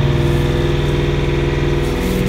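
Kioti 5310 compact tractor's diesel engine running steadily, heard from inside the cab; its note shifts slightly just before the end.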